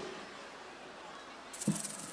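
A pause in a man's speech into a stage microphone: faint steady hiss, then a short breath and a brief vocal sound near the end.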